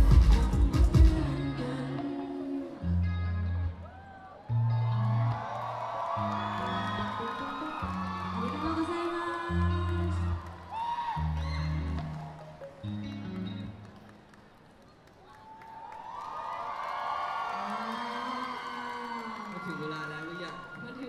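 Live pop music over a concert PA: a burst of loud drum hits at the start, then a slow run of deep bass notes with voices above them, which fades out about fourteen seconds in. The audience then cheers and whoops.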